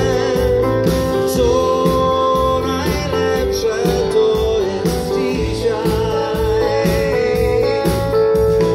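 Live pop band (keyboard, bass guitar and drums) playing a ballad, with a voice holding long notes with vibrato over it.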